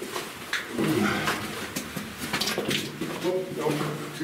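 Footsteps on the rock floor of a narrow mine tunnel, a few sharp irregular steps, with brief indistinct talk about a second in and again near the end.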